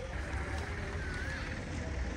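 A Mahindra Thar SUV driving on a dirt track, heard faintly under steady wind rumble on the microphone, with a faint wavering whistle about a second in.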